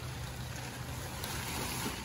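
Steady rain falling, an even hiss with no distinct drops.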